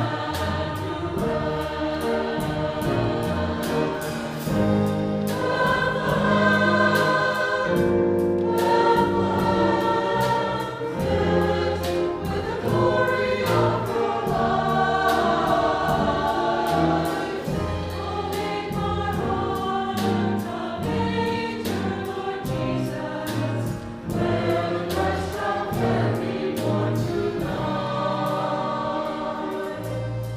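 Church choir singing in parts with instrumental accompaniment and a steady rhythmic beat.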